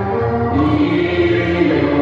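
A man and a woman singing a Cantonese duet into microphones, amplified over backing music with a steady low bass pulse; the voice holds long sustained notes.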